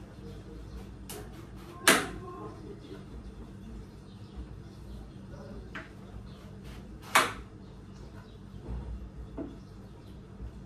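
Kitchen knife cutting through a squash and knocking down onto the cutting board: two sharp knocks about five seconds apart, with a few lighter clicks between and after.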